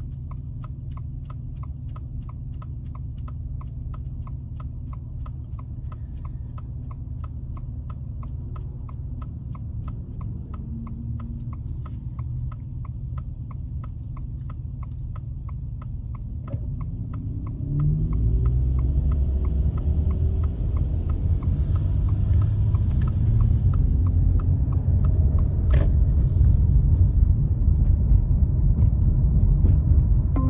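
Car's turn-signal indicator clicking steadily a few times a second over the low hum of the idling car. About 17 seconds in the car pulls away, and engine and road noise rise to become the loudest sound while the clicking carries on beneath it.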